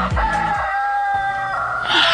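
Rooster crowing in one long held call, starting right as a disco-style music bridge ends.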